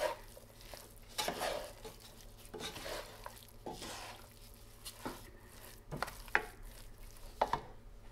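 Two wooden spoons stirring and turning a thick bread-crumb and vegetable stuffing in a nonstick frying pan, in irregular scraping strokes with a few sharper knocks of spoon on pan in the second half.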